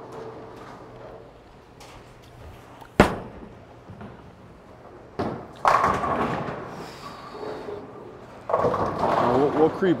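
A Storm !Q Tour Solid bowling ball is released and lands on the lane with one sharp thud about three seconds in. Its roll is quiet, and it crashes into the pins about two and a half seconds later, the clatter fading over a couple of seconds. A second burst of clatter comes near the end.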